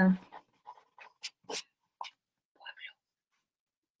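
A voice finishing a phrase, then a pause broken only by a few faint, brief, scattered sounds.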